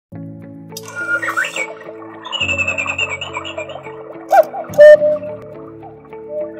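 Background music with bird-like chirps and a high trill, then, about four seconds in, the loud two-note call of a battery Black Forest chalet cuckoo clock as its bird comes out: a short first note and a lower, longer second note.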